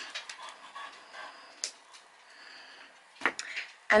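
Faint rustling and light clicks of fine jewellery wire being coiled by hand around a wire-wrapped pendant, with one sharper click about a second and a half in.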